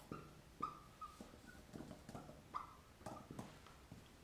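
Faint writing on a board: a few short high squeaks with light taps over the first three seconds.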